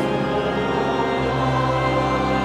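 Congregation singing a hymn with organ accompaniment, voices and organ holding long chords over a deep bass, with a chord change about a second in.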